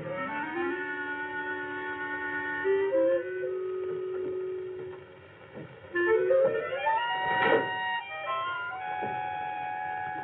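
Instrumental film score: slow, sustained notes that step from pitch to pitch. It dips briefly about five seconds in, then a rising phrase swells to its loudest point about a second and a half later before settling back into held notes.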